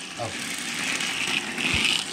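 Battery-powered toy Thomas engine's small motor and gears whirring as it runs along the plastic track, growing steadily louder as it comes closer.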